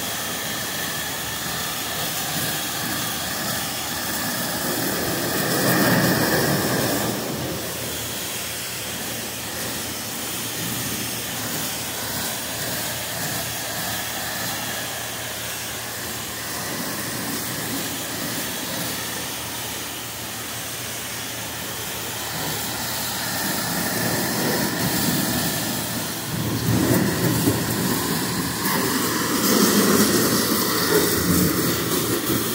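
High-pressure washer wand spraying water over the back of a semi tractor's cab and chassis: a steady hiss of the jet on metal. It swells about six seconds in and again over the last several seconds.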